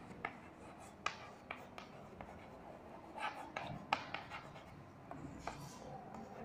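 Chalk writing on a blackboard: faint, irregular taps and short scrapes as the words are written.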